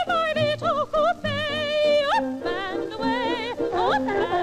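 Cartoon score: a high, operatic voice singing a melody with wide vibrato over an orchestral accompaniment, sliding quickly upward near the end.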